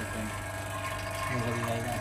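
Steady electrical hum from a phone-screen press machine running with a display glass inside, with faint voices in the background.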